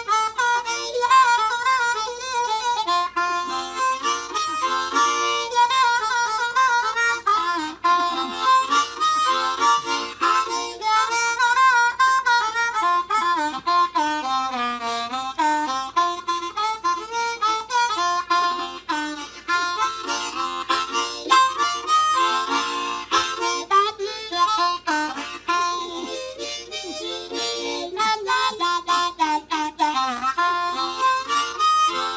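Blues harmonica played solo, cupped in both hands, in a rhythmic instrumental run of short phrases with wavering, bent notes.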